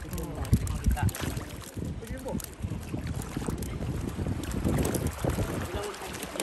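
Wind buffeting the microphone over water slapping against a boat, with a couple of knocks about half a second and a second in, and voices in the background.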